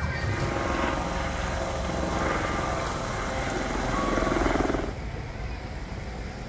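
A steady mechanical drone over outdoor background noise. It grows louder about four seconds in, then drops off suddenly about a second later.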